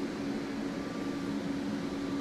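Steady hum and hiss of air handling, with a faint low steady tone, typical of a ventilation system running.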